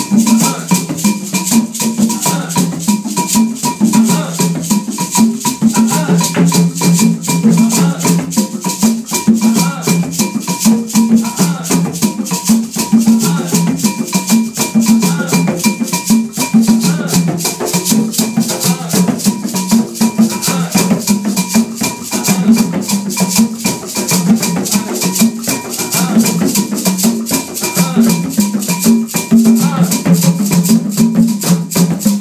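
West African percussion ensemble playing a fast, steady rhythm on hand drums with shakers rattling throughout.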